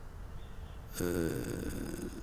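A man's long, drawn-out hesitation 'uh', starting about halfway through after a second of pause with only a low background hum.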